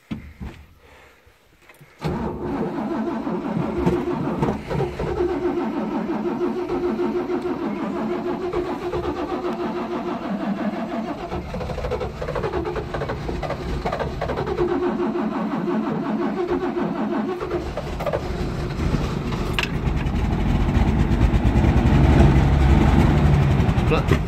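Old Toyota Land Cruiser's carburetted engine cranking on the starter after a long lay-up, primed with fuel poured straight into the carburettor. The cranking starts about two seconds in and runs steadily, then in the last several seconds it grows louder and deeper as the engine begins to fire.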